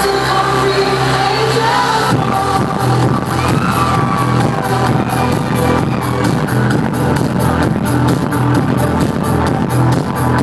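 Loud trance music from a DJ set playing over a nightclub sound system: held synth chords over a bass tone, then a driving beat with fast, even ticks comes in about two seconds in.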